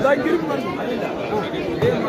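Chatter of a crowd: several voices talking over one another, with no single clear speaker.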